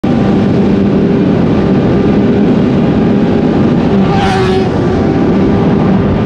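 Sport motorcycle engine running steadily at speed, heard from on board with wind rushing past. A brief higher-pitched sound rises over it about four seconds in.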